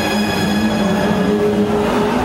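A performance backing track played loudly over the stage speakers: steady, held droning tones over a low rumble, with no beat.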